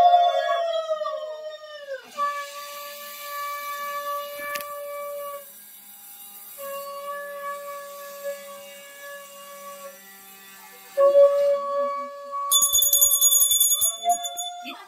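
Conch shells blown in long held notes, several at once, each note sagging in pitch as it ends; the notes break off about two seconds in and come back loudly about eleven seconds in. Near the end a small hand bell rings rapidly over them.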